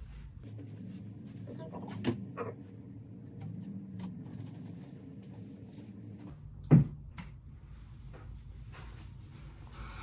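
A large rigid foam insulation board being handled and turned around, with low scraping and shuffling, two light knocks about two seconds in, and one sharp thump a little before seven seconds.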